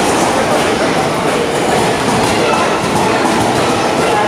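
Indian Railways passenger coaches rolling along a station platform: a steady noise of wheels running on the rails.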